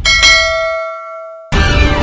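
A single bell-like ding sound effect, struck once and ringing out as it fades. Loud music cuts back in abruptly about a second and a half in.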